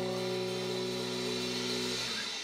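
Live funeral doom: one long chord from electric guitars and bass held and left ringing, dying away at the end.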